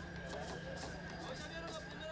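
Faint voices in the background with light clicking and a steady high-pitched hum.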